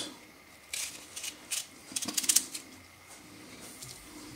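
A few brief, crisp clicks and rustles as fresh cucumber halves are handled and laid into an enamel bowl of brine, bunched in the first half and quieter after.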